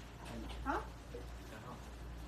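A person's voice gives a short rising vocal sound, like an exclamation, about two-thirds of a second in, with faint chatter around it.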